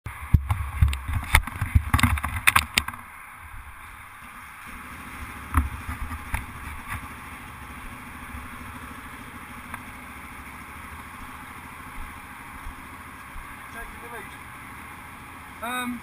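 Quad bike engine idling steadily at a standstill, after loud irregular knocks and buffeting on the microphone during the first few seconds.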